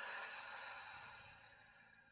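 A woman's long, slow audible breath, a soft airy rush that fades away over about two seconds: a deliberate deep breath.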